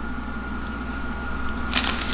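Steady low room hum with a faint high whine, then a brief crinkle of a plastic snack wrapper being handled near the end.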